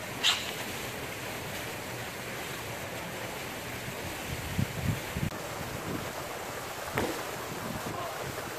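Steady wind rumbling on a phone microphone outdoors, with a sharp click just after the start, a few dull thumps around the middle, and another short knock near the end.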